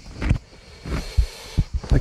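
Scattered dull thumps and scuffs of footsteps scrambling over rocks, with handling noise on the handheld recorder and a faint hiss between them.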